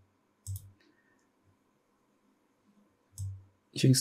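Two short computer mouse clicks, one about half a second in and another about three seconds in.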